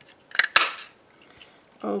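Handheld craft paper punch snapping shut as it cuts a small oak leaf out of cardstock: a sharp double click about half a second in, then a brief papery rustle and a few light taps.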